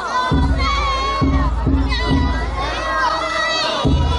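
Many children shouting a pulling chant together while hauling the rope of a danjiri float. Under the voices there is a repeating low beat, about two a second, from the float's festival drum.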